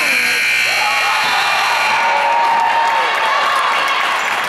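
Gym scoreboard buzzer sounding for about two seconds, over crowd voices and cheering.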